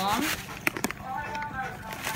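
Plastic sachet of Golden Morn maize cereal crinkling as the flakes are poured out of it into a bowl, with two sharp crackles near the middle, over a voice.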